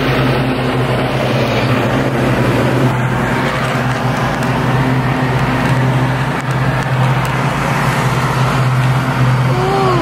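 Lawn-mowing machine's engine running loudly at a steady, unchanging pitch.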